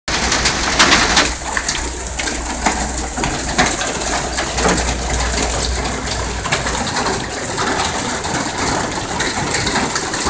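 Hail pelting a car's sheet-metal hood and roof and the surrounding grass and gravel: a steady hiss packed with many small, sharp ticks. A low rumble runs under it and drops out about two-thirds of the way through.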